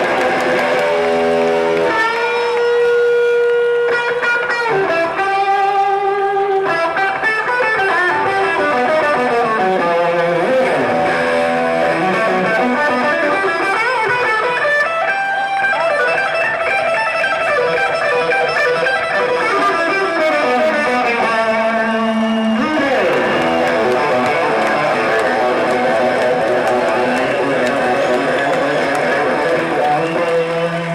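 Live electric guitar solo played through effects, with long held notes and sliding, bending runs, loud over a large outdoor PA.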